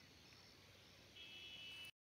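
Near silence: faint open-air background hiss, joined a little over a second in by a faint, high, steady buzz. The sound cuts off abruptly just before the end.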